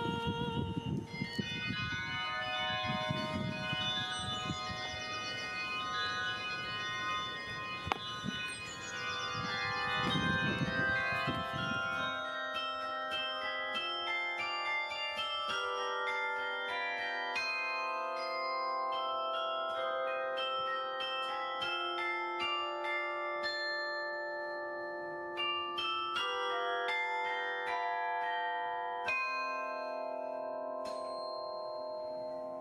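Carillon bells playing a melody. For the first twelve seconds the bells come with a low rumble under them; from about twelve seconds in they ring clearly, played by hand at the baton clavier, many overlapping ringing notes.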